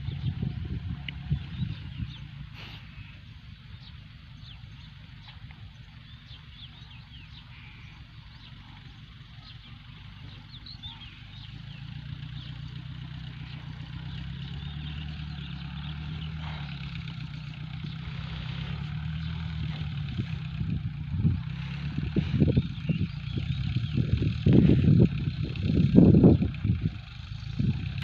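Small farm tractor carrying a home-built sugarcane sprayer, its engine running as it drives closer. The sound is faint at first and grows steadily louder over the second half, with several louder uneven surges in the last few seconds.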